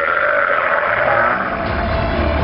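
A camel bellowing with a long gurgling roar as two camels fight.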